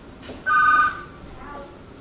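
A short electronic telephone ring: a loud two-tone trill lasting about half a second, starting about half a second in.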